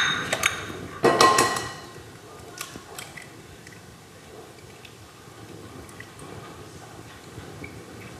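Glass bowls clinking on a worktop: a sharp ringing clink at the start and a louder ringing knock about a second in, then a few small taps and quiet while an egg is separated by hand over a glass bowl.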